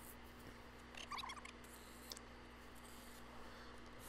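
Near silence: a faint steady low hum, with one brief, faint squeaky chirp about a second in.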